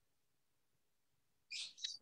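Near silence, then near the end a short hiss and a faint click.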